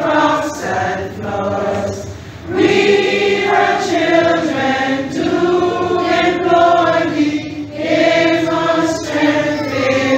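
A group of voices singing together, choir-style, in slow phrases with long held notes.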